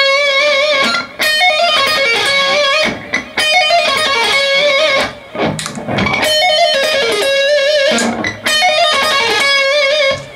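Electric guitar playing a lead line of single high notes, held notes wobbling with vibrato. The phrase is played several times over, with brief breaks between runs.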